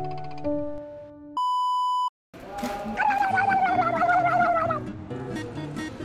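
Light background music with plucked notes, broken about a second and a half in by a steady electronic bleep lasting under a second. After a brief silent gap comes a noisy sound effect with a wavering, slightly falling tone for about two seconds, then the music returns.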